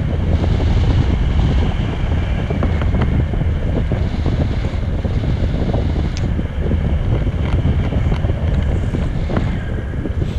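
Wind buffeting the microphone of a pole-mounted camera in flight under a tandem paraglider: a loud, steady, low rumble of rushing air.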